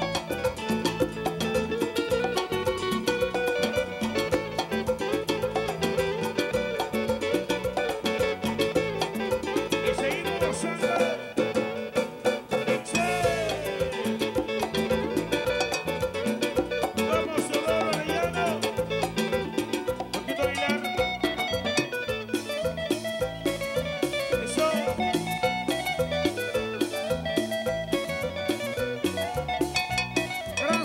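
A live band playing an instrumental passage of Latin dance music, with a plucked guitar melody over a steady beat.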